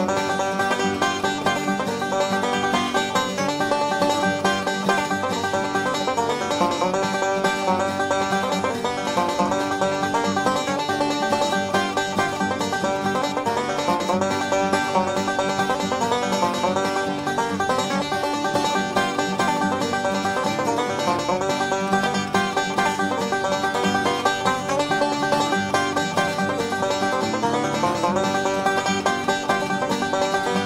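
Solo five-string banjo picking a fast, continuous bluegrass instrumental tune, a steady run of bright plucked notes with no pauses.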